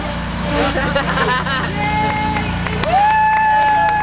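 Lawnmower engine running steadily under a group of people laughing and cheering, with long drawn-out "woo" shouts near the end.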